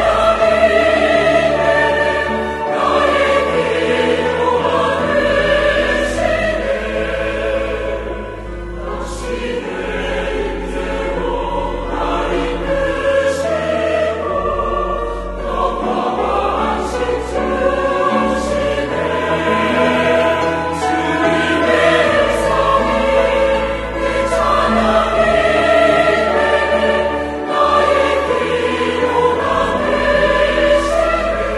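Mixed church choir singing a slow Korean worship anthem in full voice, accompanied by a small ensemble of violins, flute, clarinets, cello and piano, with long held bass notes underneath.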